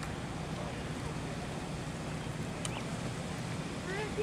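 Steady outdoor street background noise: a low rumble with a hiss over it, unchanging, with one faint click a little past halfway.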